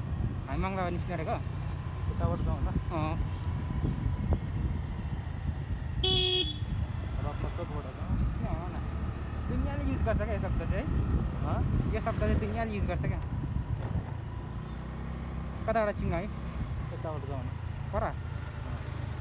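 Motorcycle riding along with a steady low engine and wind rumble, and a short horn toot about six seconds in.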